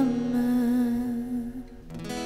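A woman's voice holding one long, low note of a kirtan hymn, fading away near the end.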